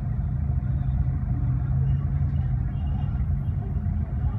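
Steady low rumble of idling vehicle engines in traffic stopped at a red light, heard from inside a vehicle's cabin.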